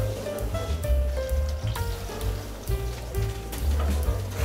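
Background music with a deep bass line and a stepping melody over a beat.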